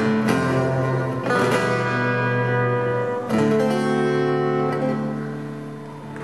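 Acoustic guitar played alone: three strummed chords, each left to ring, the last one fading away as the song ends.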